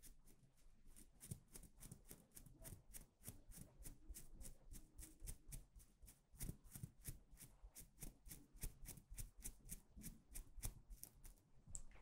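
Wooden eyebrow pencil stroking quickly over the camera, a fast run of faint scratchy strokes at about four a second.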